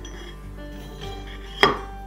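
One sharp knock about one and a half seconds in, as a stainless steel pole is pushed down into the hole drilled in its square base and the base knocks against the tabletop. Soft background music plays underneath.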